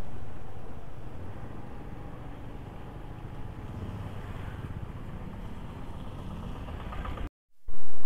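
2004 Honda Dio scooter's single-cylinder engine running faintly at low riding speed, under a low rumble of wind and road noise. The sound fades over the first couple of seconds and cuts out briefly near the end.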